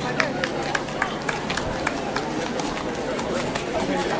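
A carriage horse's hooves clip-clopping on the road at a walk, about three to four strikes a second, clearest in the first two seconds and then fading as it moves off, with onlookers talking around it.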